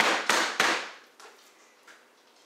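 Pampered Chef meat pounder striking boneless, skinless chicken breasts on a cutting board three times in quick succession, flattening the meat so it cooks evenly. The first blow is the loudest.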